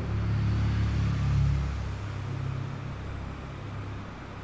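A low rumbling hum, strongest in the first two seconds and then dying down.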